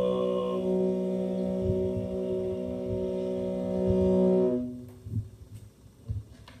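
Mongolian throat singing: one long, steady drone note with strong overtones ringing above it. It stops about four and a half seconds in, leaving only faint low knocks.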